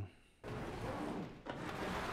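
Dense, noisy sound effects from a TV drama's soundtrack, starting about half a second in after a brief hush, with a short dip around the middle.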